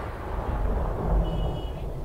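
A thunder sound effect through the stage speakers, a deep rumble slowly dying away as the intro to a rain song.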